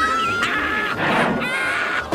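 A cartoon character laughing hysterically in a high, strained voice: a long held note breaks off about half a second in, followed by rougher, choppy laughter.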